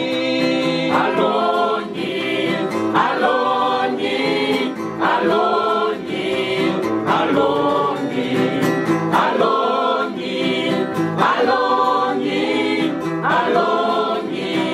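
A small choir of boys and young men singing a worship song together in several voices, with a new phrase beginning about every two seconds.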